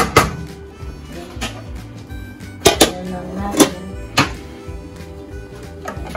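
Background music with steady held notes, and a few sharp knocks of a wooden spoon against a stainless steel pot, from about two and a half to four seconds in.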